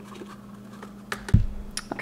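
Small containers being handled on a wooden worktable: after a quiet second, a quick run of light clicks and taps with one heavier knock, as a plastic cup and glass jar are picked up and set down.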